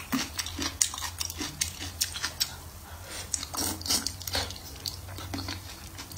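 Close-miked chewing of soft braised food: a quick, irregular run of wet mouth clicks and smacks over a steady low hum.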